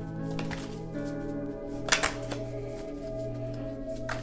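Soft background music of long held tones, with a deck of tarot cards being shuffled by hand. A sharp snap of the cards comes just before two seconds in.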